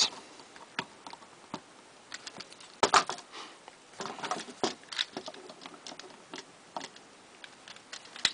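Small plastic toy parts clicking and rattling as they are handled and pegged into the sides of a Transformers Generations Scoop figure in vehicle mode. The clicks are irregular, with the loudest about three seconds in.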